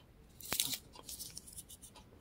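Faint handling noises from a smartwatch being fumbled in one hand: a few small clicks and rustles, the loudest about half a second in.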